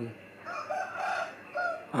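A rough animal call in the background, in a few parts over about a second and a half.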